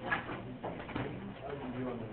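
Indistinct murmur of several voices talking at a distance, with small knocks and rustles.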